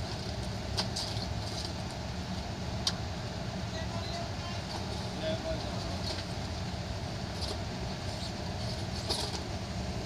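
Steady low rumble of a vehicle idling, heard from inside a car's cabin, with a few sharp clicks and faint voices in the background.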